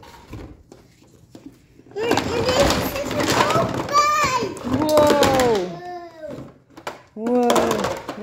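A toddler's wordless, excited vocal sounds with falling pitch, over the clatter and rustle of hard plastic toy water-track pieces being pulled out of a cardboard box. The clatter starts about two seconds in, and a shorter vocal sound comes near the end.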